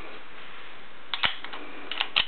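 Light metallic clicks from the M1 Garand's action and cartridges being handled, one about a second in and another near the end, over a steady background hiss.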